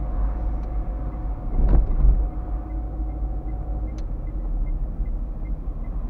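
Car driving, heard from inside the cabin: a steady low rumble of engine and road noise, with a louder thump about two seconds in and a short click about four seconds in.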